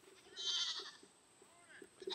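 A goat bleating: one short, quavering call about a third of a second in, then a fainter cry near the end.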